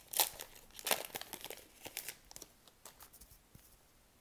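Upper Deck Series 1 hockey card pack's wrapper crinkling and tearing as it is opened, the sharpest rustles near the start and about a second in, then fading to faint handling of the cards.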